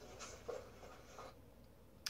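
Faint scratchy rustling of fingers rubbing in hair, in a couple of short spells during the first second or so.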